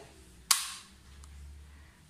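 A single sharp click about half a second in: the switching mechanism of a single-phase residual-current circuit breaker (RCCB) snapping over as it is operated.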